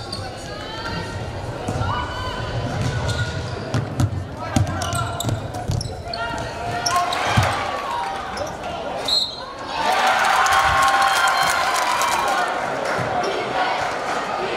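Live basketball game sound in a gym: a ball bouncing and knocking on the hardwood floor amid players' and spectators' voices. The crowd noise swells and stays louder from about ten seconds in.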